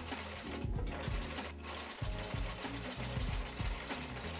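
Domestic electric sewing machine running as it stitches a pocket welt, heard under background music.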